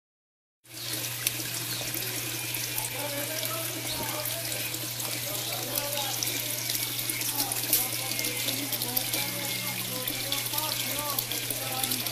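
Water splashing and trickling steadily into a fish tank, with many small droplet clicks and a steady low hum underneath.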